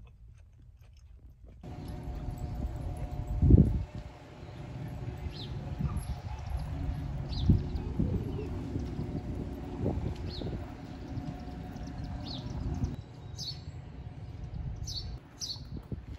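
Outdoor street ambience after a near-quiet first second or so: a low rumble of wind and handling on a walking phone microphone, a faint steady hum, a few dull thumps, and short bird chirps every second or two, growing more frequent near the end.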